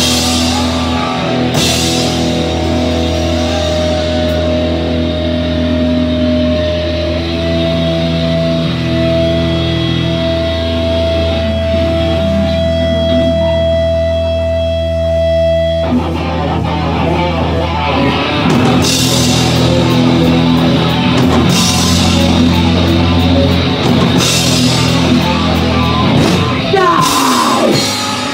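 Live heavy rock band with two electric guitars and drums. A guitar note is held for several seconds around the middle. It cuts off about two-thirds of the way in, and the full band comes back in with cymbal crashes.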